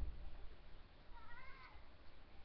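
A single short, high-pitched cry with a pitch that rises then falls, about half a second long in the second half, over faint room noise.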